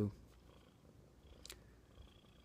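A faint low, steady rumble under quiet room tone, with a single sharp click about one and a half seconds in.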